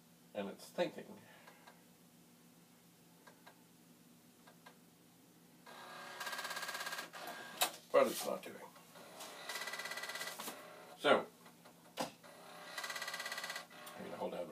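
A Commodore 5.25-inch floppy disk drive rattles in three buzzing bursts of about a second each as it tries to read a newly inserted diskette. Sharp plastic clacks come between the bursts as the disk is handled and the drive door is latched.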